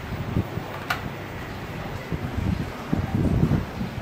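Uneven low rumble of wind buffeting the camera microphone, growing louder toward the end, with a single sharp click about a second in.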